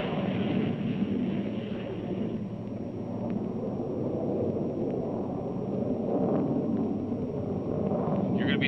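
Jet aircraft engine noise: a steady rumble, with a higher hiss that fades after about two seconds.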